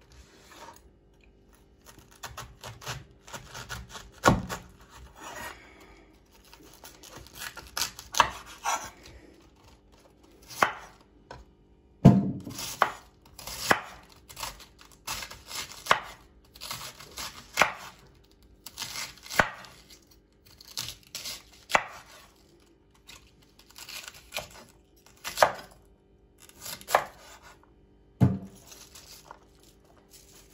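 Chef's knife slicing through a raw green cabbage on a wooden cutting board: a crisp crunch of leaves and a knock of the blade on the board with each cut, about one cut a second. A few heavier knocks stand out along the way.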